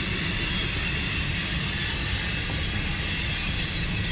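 CSX mixed freight train rolling steadily past: the freight cars' wheels run on the rail, with a thin high-pitched wheel squeal above the rumble.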